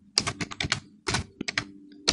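Computer keyboard being typed on: quick, irregular runs of keystroke clicks with short pauses between them.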